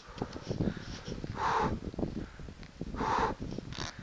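A skier's heavy breathing, a loud breath about every second and a half, over the crunch and scrape of skis moving through snow.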